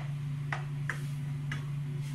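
Plastic spatula knocking and scraping against a nonstick wok while stirring ground pork: four short clicks, roughly half a second apart, over a steady low hum.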